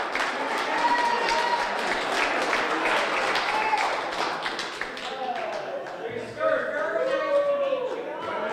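Audience applauding with many quick claps, mixed with crowd chatter and voices, which stand out more near the end.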